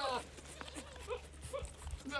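Goat calls: a short falling bleat right at the start, then three or four short, soft calls about half a second apart, from a buck goat calling to the does.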